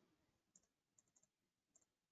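Near silence: a gap between phrases of speech.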